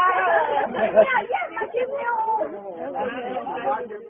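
Several people talking over one another and laughing.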